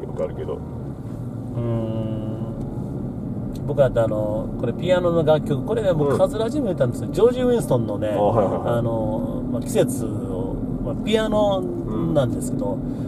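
Voices inside a moving car, over a steady low rumble of road and engine noise.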